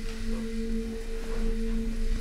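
A steady sustained tone at two pitches an octave apart, over a low rumble.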